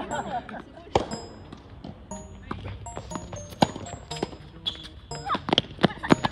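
Tennis balls struck by rackets in a doubles exchange at the net: several sharp hits, the loudest about three and a half seconds in and a quick pair near the end, over background music.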